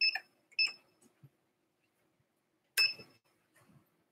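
Three light clinks, each with a brief high ring: two close together at the start and one about three seconds in.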